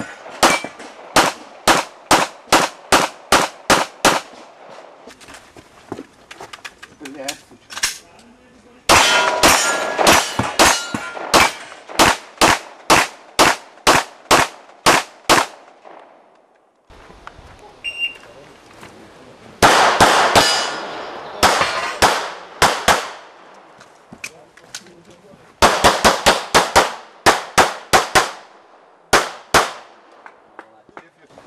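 Pistol shots fired in rapid strings of many shots, separated by short pauses. Many hits set steel targets ringing with a metallic clang.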